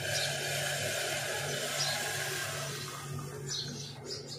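Hot kahwa being poured from a steel pan through a steel mesh tea strainer into a glass cup: a steady splashing hiss that fades about three seconds in, over a constant low hum.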